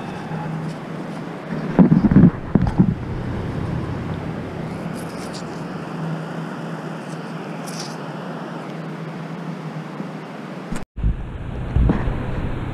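Steady wind rushing on the microphone, with surf noise behind it, on an open beach. A few low thumps come about two seconds in and again near the end, and the sound drops out completely for a moment shortly before the end.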